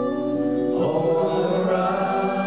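Live folk band playing an instrumental passage: acoustic guitars under a sustained harmonica melody, the notes changing about a second in.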